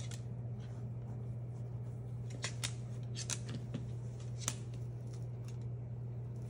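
Scattered sharp clicks and taps as a Moluccan cockatoo moves about on a hardwood floor and handles a large plush toy, over a steady low hum.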